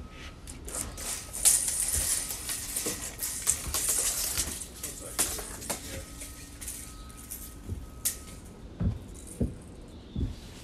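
A steel tape measure reeling in, rattling and clicking for a few seconds and ending in a sharp click as the case closes. Footsteps thud on wooden deck boards near the end.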